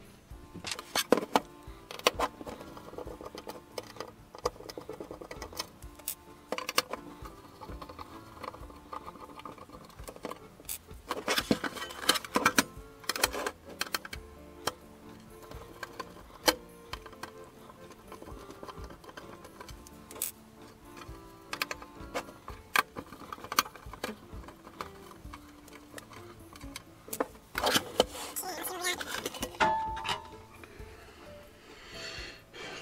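Background music with scattered clicks, knocks and rattles of a screwdriver and small screws on a bench power supply's sheet-metal case as the case is unscrewed. A cluster of clatter near the end comes as the cover is lifted off.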